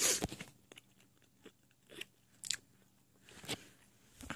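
Close-up crunching and chewing of crunchy food, in several separate bites. The loudest comes right at the start, with others about two, two and a half and three and a half seconds in.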